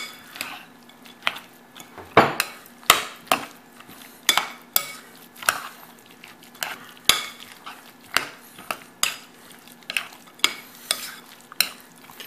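Metal fork stirring a chunky chicken salad with mashed avocado in a glass bowl, clinking against the glass in irregular taps, roughly two a second.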